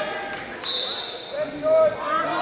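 A referee's whistle gives one short, steady high blast a little after half a second in, just after two sharp knocks. Voices of people in the gym run throughout and are loudest near the end.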